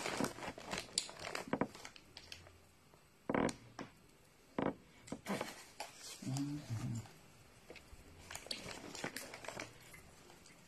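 Clear plastic bag crinkling and rustling in irregular bursts as hands rummage through the dried tea leaves inside it. Two sharper, louder crackles come a little past a third of the way in.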